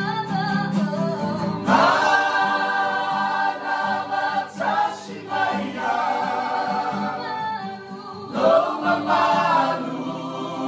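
A group of men, women and children singing a gospel hymn together as a choir, the phrases swelling louder about two seconds in and again near the end.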